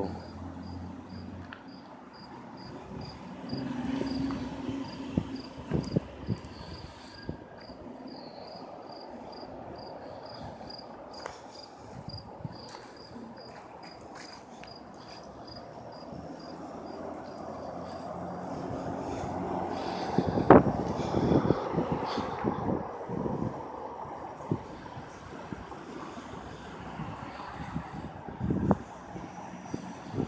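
Outdoor ambience: an insect chirps in a steady, even pulse of about two a second. Traffic swells to a peak with a sharp knock about two-thirds of the way through, as a passing vehicle would, then fades.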